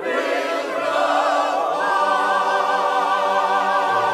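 Mixed church choir singing: a new phrase begins right at the start, and from about halfway the voices settle into a long held chord with vibrato.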